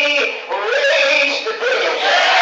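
A man preaching through a microphone and PA in a half-sung, chanting cadence, his pitch gliding up and down in long held phrases.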